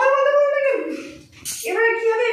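Two long, high, drawn-out vocal notes, each slowly falling in pitch, with a short gap between them.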